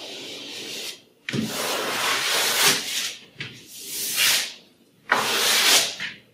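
A hand painting tool scraping and dragging cold wax and oil paint across heavy paper on a wall, in a series of about four long strokes with brief pauses between them.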